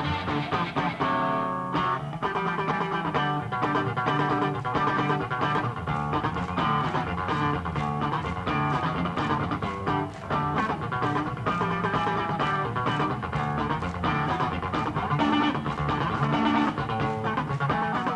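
Electric bass guitar played solo with the fingers: a bluesy run of plucked notes and chords, the low notes strongest.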